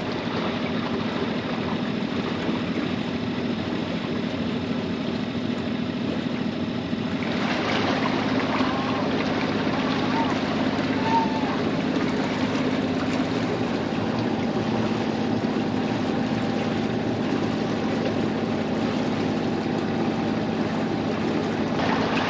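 Sailboat's inboard engine running at a slow, steady speed, a constant low drone. A rushing noise of water and wind grows louder about seven seconds in.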